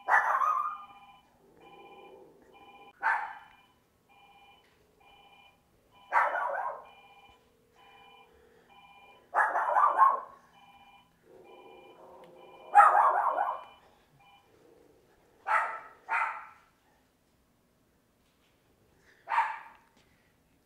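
Small chihuahua-type dog barking in single sharp yaps every few seconds, about eight in all, some in quick pairs. A faint, evenly pulsing electronic tone sounds under the barks and stops about two-thirds of the way through.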